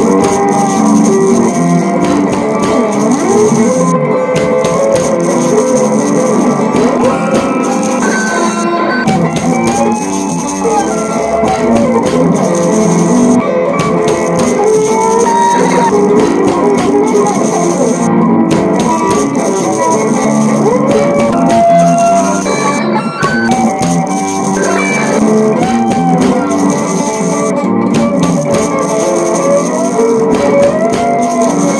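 Instrumental stretch of a funky rhythm-blues with a rockabilly feel: a guitar solo full of bent and sliding notes over bass and drums, with maracas shaking along.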